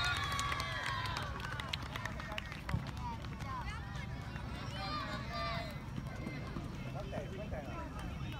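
Scattered, distant voices of children and adults calling and chatting across an open football pitch, over a steady low rumble. A single short knock about three seconds in.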